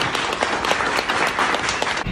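Audience applauding: many hands clapping in a quick, dense patter.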